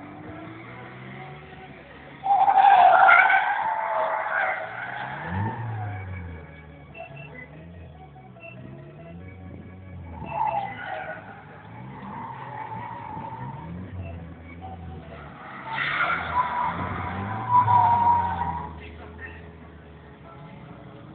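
Toyota Soarer drift car's engine revving up and down as its tyres squeal in long bursts, the loudest about two seconds in, another around the middle and two more near the end.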